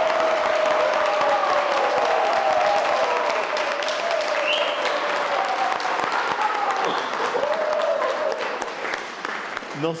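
An audience applauding, with voices calling out and cheering over the clapping; the applause eases off near the end.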